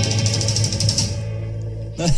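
Closing bars of a recorded song: a held low bass note under a fast, even tapping beat, fading out in the second half.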